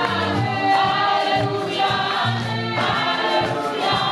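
Gospel choir singing through microphones, a woman's voice leading at the front, over a low bass line.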